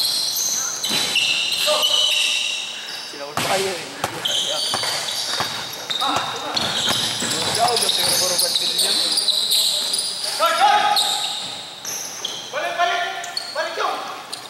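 Basketball being played on a hardwood gym floor: many short, high sneaker squeaks throughout, the ball bouncing now and then, and players shouting near the end.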